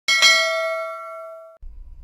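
A bright bell ding with several ringing tones, struck right at the start, fading, then cut off abruptly about a second and a half in. It is the notification-bell sound effect of a subscribe-button animation.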